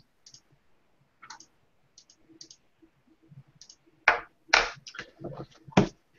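Faint scattered clicks, then a quick run of louder clicks and taps in the last two seconds, picked up over a video-call microphone.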